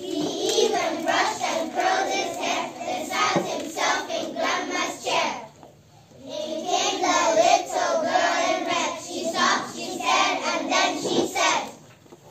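A group of young children singing together in unison, with a brief pause about halfway through before the singing resumes.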